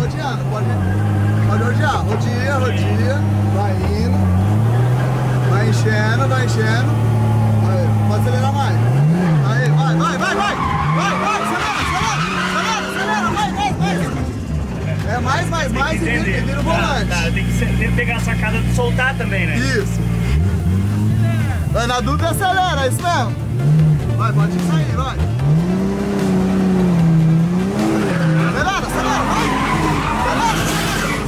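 Forged, turbocharged Toyota 1JZ straight-six in a Nissan 350Z drift car, heard from inside the cabin as the car is driven hard. The engine holds high revs for several seconds at a time, then drops and rises again. Tyres squeal at times.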